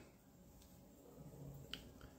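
Near silence: room tone in a pause between spoken phrases, with one faint short click near the end.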